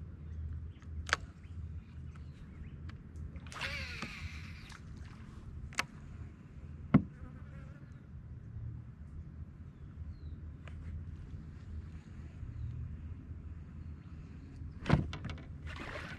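An insect buzzing close by with a wavering pitch for about a second, roughly four seconds in, over a low steady rumble, with a few sharp clicks.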